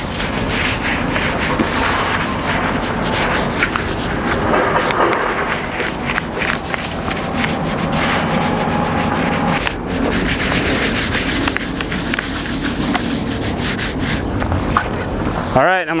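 Hand sanding with a spongy 800-grit sanding pad rubbed back and forth over a lacquered reclaimed wood beam, scuffing the first lacquer coat between coats.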